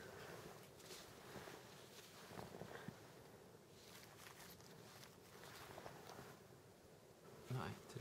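Near silence with faint rustling of gloved hands handling a nylon rifle sling over a steady low hum, and a short vocal sound near the end.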